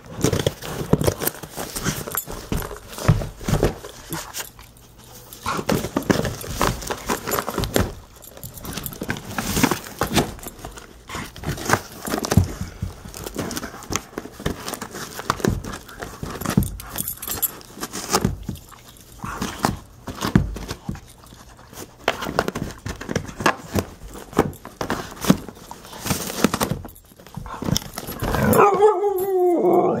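A pit bull scratching and pawing at a cardboard mailing box, tearing at it. There are irregular claw scrapes, knocks and rips on the cardboard, with a short pitched whine-like sound near the end.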